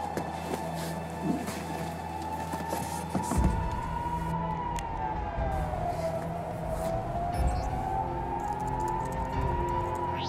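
Tense film score: steady low drones with a single siren-like tone rising and falling slowly over them, and a low pulsing beat coming in about a third of the way through.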